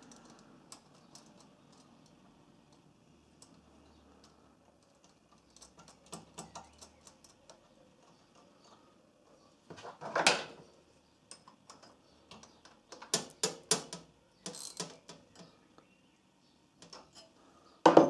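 Small metal clicks and taps of nuts, washers and hand tools being handled while an earth-cable bolt is refitted to a welder terminal. A louder clatter comes about ten seconds in as a tool is picked up from the wooden bench, followed a few seconds later by a quick run of sharp clicks.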